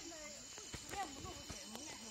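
Faint voices talking in the distance, with a few soft clicks.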